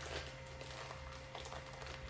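Faint crinkling of a clear plastic zip-top bag being handled, with a few soft clicks.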